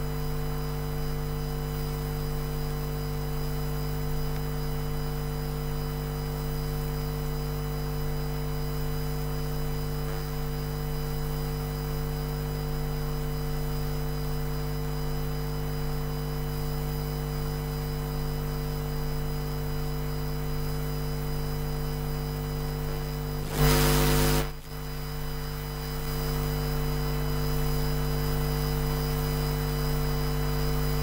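Steady electrical mains hum on the chamber's sound feed, a low buzz with several fixed tones above it. A loud burst of noise about a second long breaks in about twenty-four seconds in.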